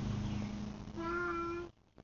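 A toddler's small, high voice saying one drawn-out "bye" about a second in. The sound cuts out abruptly shortly after.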